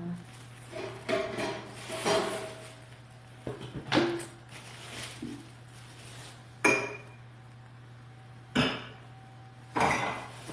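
Metal pots and pans clanking and knocking together in a series of separate sharp strikes, some with a brief metallic ring, over a steady low hum.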